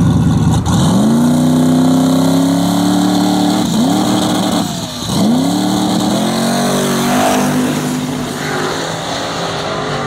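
Drag cars launching off the line and accelerating hard down the strip. The engine pitch rises steeply, drops and climbs again at upshifts about four and five seconds in, and eases off slightly as the cars pull away.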